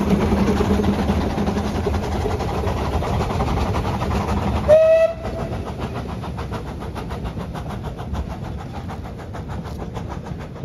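Narrow-gauge steam locomotive running close by, then a short whistle blast about five seconds in. After that, a train of carriages rolls away with a steady rhythmic clicking of wheels on the track.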